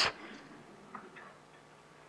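The last word of a man's speech dies away at the very start, then quiet room tone with one faint short sound about a second in.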